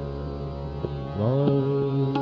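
Hindustani classical singing in Raag Basant Mukhari over a steady drone: about a second in, a male voice glides up into a long held note, with a few light drum strokes.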